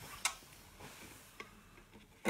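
Handling noise from an acoustic guitar being lifted into playing position: a few light knocks and rubs, the loudest about a quarter second in.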